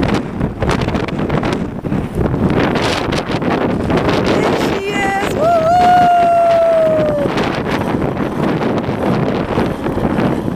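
Gusting wind buffeting the microphone. About halfway through, a high drawn-out call rises, then sinks slowly over about two seconds.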